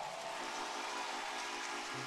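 Soft sustained keyboard chord: several steady notes held together, with a lower group of notes coming in about half a second in.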